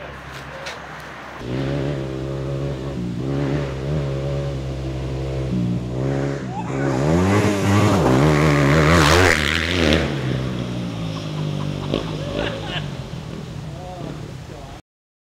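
Yamaha WR250R single-cylinder four-stroke dirt bike approaching and revving, growing louder. It is loudest as it wheelies past about eight to ten seconds in, then drops in pitch and fades away.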